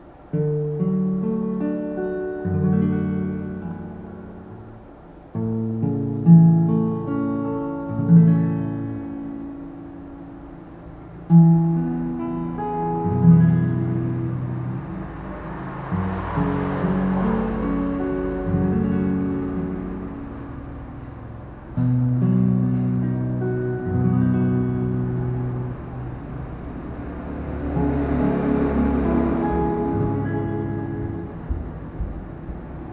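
Acoustic guitar with a capo at the second fret playing a slow chord progression (C, Em, Bm): picked chords left to ring and fade, with fuller strummed chords around the middle and again near the end.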